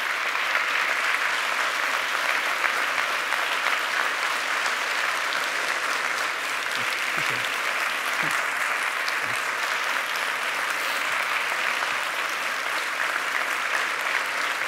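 Large audience applauding steadily, a dense even clapping that holds at one level throughout.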